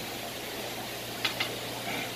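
Caulking gun squeezing silicone into a glass aquarium seam: two faint clicks a little past one second in, over a steady low hum.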